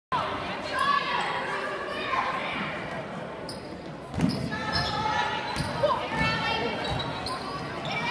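A basketball bouncing on a wooden gym floor during play: a few separate thumps, the loudest about four seconds in, over the voices of players and spectators ringing in the big gym.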